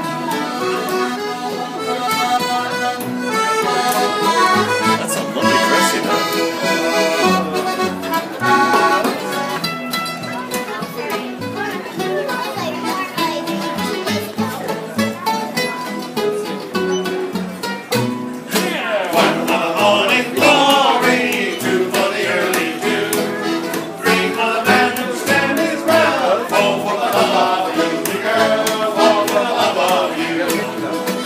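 Acoustic folk band playing a lively sea-shanty tune on accordion, strummed acoustic guitar, mandolin and plucked upright bass.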